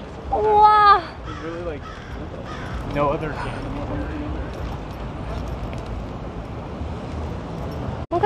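A woman's high-pitched, drawn-out wordless exclamation, rising at its end, about half a second in, followed by a couple of short murmured sounds, over steady city-street traffic noise.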